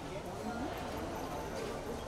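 Several people's voices talking and calling over one another, with a few faint clicks.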